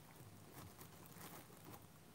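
Near silence: room tone with a few faint soft ticks and rustles in the middle.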